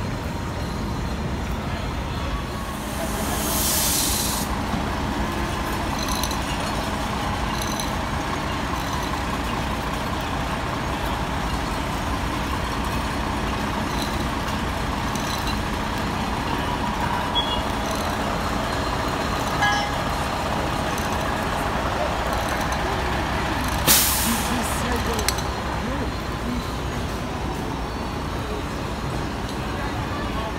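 Fire apparatus diesel engines idling with a steady low rumble, broken by two hisses: a longer one about three seconds in and a sharp, brief one about twenty-four seconds in.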